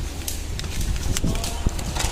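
Shop ambience under a moving handheld phone: a low rumble with several sharp clicks and knocks, the loudest a little after halfway, and a faint steady tone in the second half.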